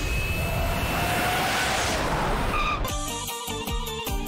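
Jet airliner flyover sound effect: a loud, steady rushing roar with a faint whine. It cuts off abruptly about three seconds in, when music with a regular beat starts.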